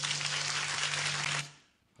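Studio audience applauding, with a low steady hum beneath it; the applause cuts off abruptly about a second and a half in.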